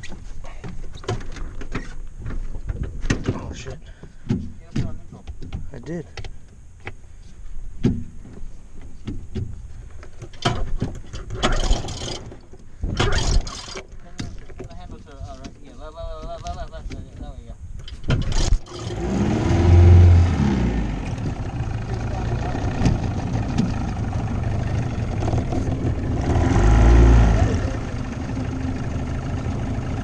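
Knocks and clicks of handling in an aluminium boat, then about 18 seconds in a 25 hp tiller outboard motor starts and runs steadily, rising louder twice as it is throttled up.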